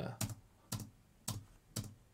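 Four single keystrokes on a computer keyboard, about half a second apart.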